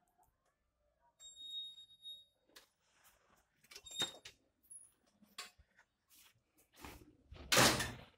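A door being opened as someone passes from indoors to outside: a high squeak about a second in, a sharp click near the middle, then scattered knocks and footsteps, and a louder noisy thump near the end.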